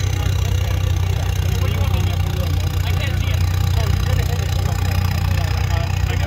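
A rock-crawler buggy's engine running steadily at idle, a constant low rumble, with faint voices in the background.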